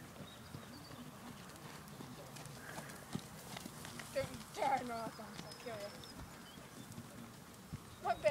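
Faint, soft hoofbeats of a horse going past and away on a sand arena, with a brief faint voice about halfway through.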